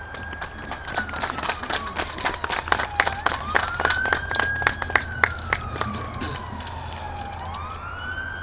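Audience applauding, a patter of claps that thins out about six seconds in, while a siren slowly rises and falls in pitch in the background, each cycle lasting about four seconds.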